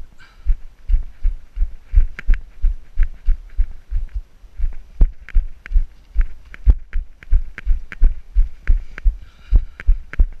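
A runner's own footsteps on a rocky path, heard through a camera carried on the body: a steady beat of dull thumps, about three a second, each with a sharp click of shoe on stone.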